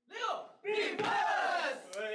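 A small group of young men shouting together in a huddle, a pre-show team cheer: one short call, then a longer shout of many voices lasting over a second.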